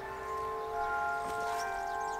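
Church bells ringing, their long tones hanging on and overlapping, with fresh strokes coming in about a second in and again near the end.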